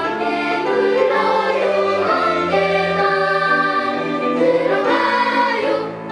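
Children's choir singing a sustained, melodic passage in harmony, accompanied by a small string ensemble.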